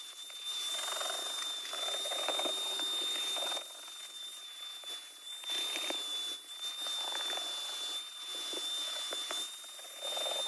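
Vacuum cleaner running with a steady high whine while its crevice nozzle sucks across trunk carpet; the rush of air rises and falls as the nozzle is pressed into the carpet and moved.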